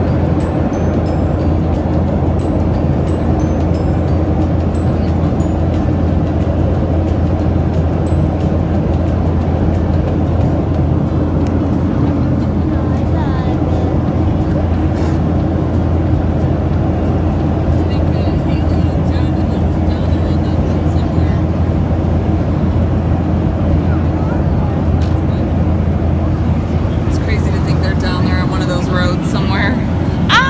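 Airliner cabin noise: the steady roar of jet engines and airflow heard from inside the passenger cabin, with a low, even hum underneath.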